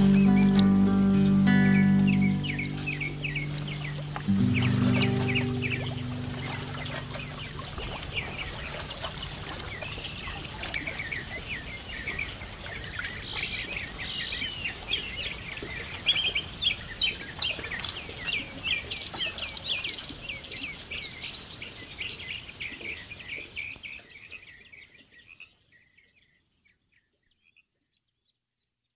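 The last chords of a music track die away in the first few seconds, leaving songbirds chirping quickly and repeatedly. The birdsong fades out near the end.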